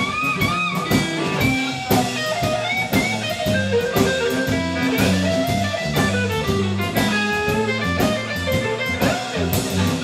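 Live blues-rock trio playing an instrumental break: a Telecaster electric guitar plays lead lines with bent notes over a steady drum-kit beat and electric bass.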